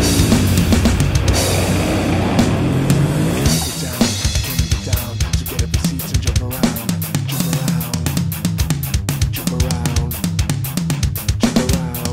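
Heavy metal music with a drum kit. For about four seconds it is a dense, held passage with sliding pitches, then rapid, tightly spaced drum hits take over.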